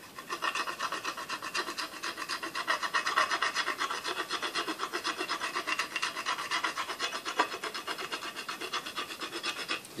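A putty-knife scraper rasping along a wooden baseball bat's handle, scraping off old, sticky pine tar in quick, even strokes, several a second.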